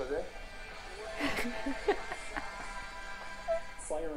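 Voices and background music from an interview video being played back, with the music settling into a held chord from about a second and a half in.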